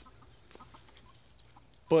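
Near silence: a quiet outdoor background with a few faint, short sounds.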